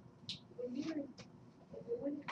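A faint, distant voice speaking in short, unclear bits, likely a student asking a question from across the classroom, much quieter than the teacher's voice.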